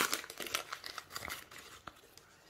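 Plastic wrapper of a Match Attax trading-card packet crinkling and tearing as it is pulled open by hand, a quick run of crackles that thins out toward the end, with one sharp click just before it stops.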